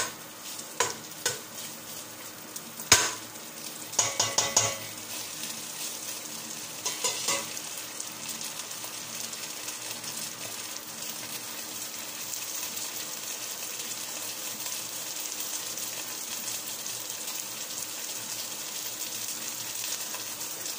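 Food sizzling in a stainless steel pot while a metal spoon stirs and scrapes it. The spoon strikes the pot sharply about three seconds in and taps it several times around four seconds and again near seven seconds. The sizzling grows steadier and louder in the second half.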